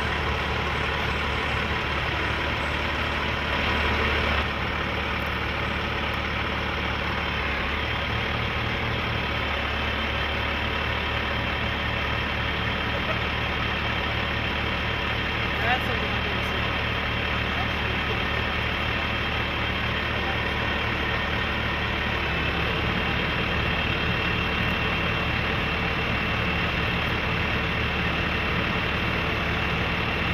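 Heavy rotator wrecker's diesel engine running steadily while it powers the boom hydraulics that hold and slowly swing a loaded cement mixer truck. Its low note steps up slightly a couple of times, and a faint high whine joins in during the second half.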